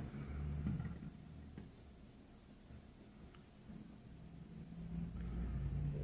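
Quiet room with a faint low hum, and a few soft handling sounds from the small glass bowl being turned in the hand.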